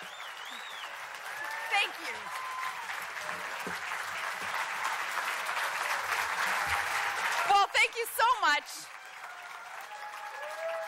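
Audience applauding, building steadily and at its loudest about two-thirds of the way through, then dying away near the end.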